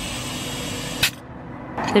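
Compressed air hissing steadily from a TDR 2000 forecourt tyre inflator through its chuck into a car tyre, cut off with a click about a second in. The tyre is being topped up from about 30 psi toward 32.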